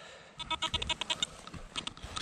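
A metal detector's rapid pulsing tone sounding over a target buried deep in the soil, with a spade scraping in damp earth underneath.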